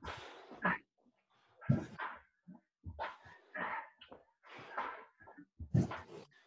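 Heavy, huffing breaths and grunts of exertion from people doing burpees, in uneven bursts about a second apart, with a few dull thuds among them.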